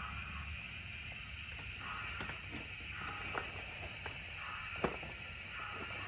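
A few light clicks and taps of plastic pieces and a cardboard box being handled on a layout table, over a steady low hiss.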